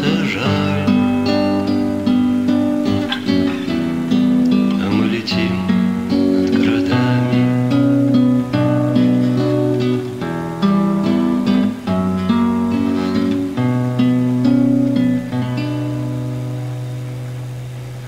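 Instrumental acoustic-guitar music, chords and notes played steadily, fading out gradually over the last few seconds.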